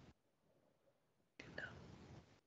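Near silence: room tone through a video-call connection, with a faint short rush of noise near the end.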